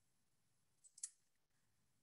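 Near silence: room tone, with a faint short click about a second in.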